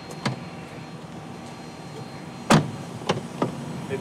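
A car door clicks open, then about two and a half seconds in it shuts with a solid thud, followed by two lighter knocks as someone settles into the seat.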